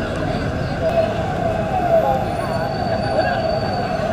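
Busy street noise: a steady rumble of traffic with a wavering, siren-like tone and a crowd's voices mixed in.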